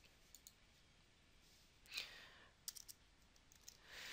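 Near silence with a few faint clicks and a soft breath about two seconds in.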